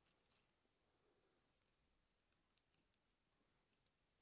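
Near silence: room tone, with two faint ticks a little past halfway.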